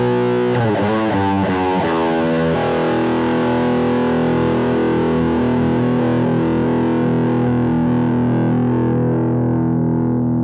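Electric guitar played through a tube amp and the Two Notes Torpedo Captor X load box and cabinet simulator. A quick phrase of notes is followed, about two and a half seconds in, by a chord held and left ringing.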